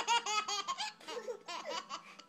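A baby laughing while being tickled: a quick run of high-pitched laughs, several a second, then thinning out into a few separate giggles.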